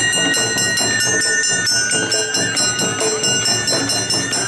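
Awa odori festival band music: the kane hand gong is struck in a quick, steady rhythm over drums, and its metallic ringing is the brightest sound. A high bamboo-flute melody holds long notes above it.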